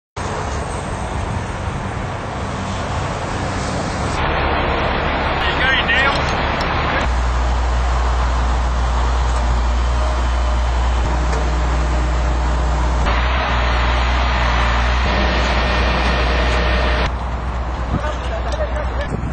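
Steady road-traffic noise from a busy freeway, followed after several abrupt cuts by a steady low outdoor rumble.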